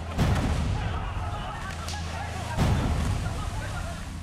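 Film soundtrack with two heavy booming hits, one just after the start and another about two and a half seconds later, over a steady low drone.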